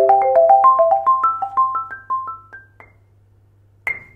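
Marimba struck with Dragonfly Percussion M4 medium-hard mallets: single notes about four to five a second, climbing in pitch over the first three seconds and ringing out, then one sharp high strike near the end. A faint steady low hum sits underneath, a background vibration in the room.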